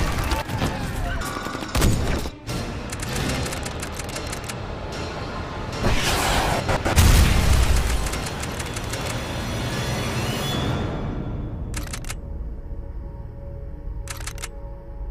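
Film-trailer soundtrack: music mixed with gunfire and explosions, with the heaviest, deepest boom about seven seconds in. The last few seconds are mostly quieter music.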